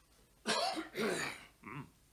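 A person coughing: a short run of three coughs starting about half a second in, the last one weaker.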